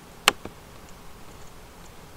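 A single sharp click of a computer mouse button about a quarter second in, then only faint room hiss.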